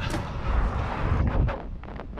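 Wind rushing over a camera microphone on a moving bicycle, a low buffeting rumble with a few short knocks about a second and a half in.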